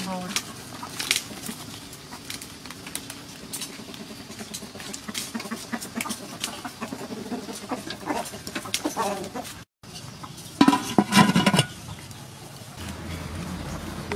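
Chickens clucking, with a louder, longer call about ten and a half seconds in, over scattered light clicks and knocks.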